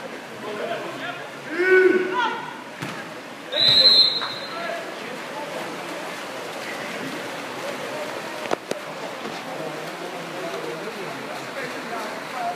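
A referee's whistle blows once, a steady high blast of about half a second, roughly four seconds in, just after a man's shout. Echoing indoor-pool noise of splashing swimmers and voices runs underneath.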